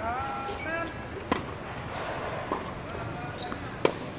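Tennis rally opening with a serve: a sharp racket-on-ball hit about a second in, a fainter knock around two and a half seconds, and the loudest crack of a hit just before the end.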